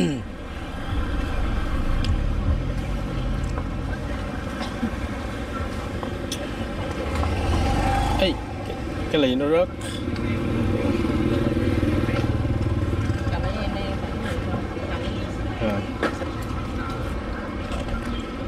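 Street traffic on a narrow market street: car and motorbike engines passing close by over a steady low rumble.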